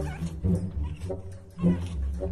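Pug puppy whining and yipping in a run of short, wavering high calls, about one every half second, the loudest near the end.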